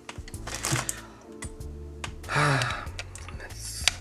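Small clicks and rattles of wiring and a USB cable being handled and plugged into the microcontroller board, over a steady background music bed, with a short vocal sound about halfway through.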